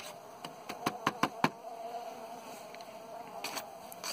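Honeybees buzzing steadily around an open hive, with a quick run of four or five sharp taps about a second in.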